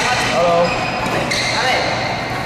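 Busy badminton hall ambience: players' voices in the background, shuttlecock hits and the high squeaks of court shoes from the surrounding courts, echoing in the large hall.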